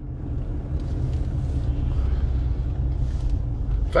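Car engine and road noise heard from inside the cabin while driving: a steady low rumble that grows louder over the first second and then holds.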